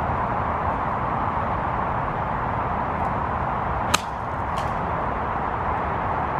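Steady wind noise on the microphone, broken about four seconds in by a single sharp click: a golf club striking the ball on a fairway shot.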